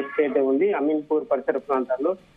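Speech only: a man talking in Telugu over a telephone line, the voice thin and narrow as phone audio is.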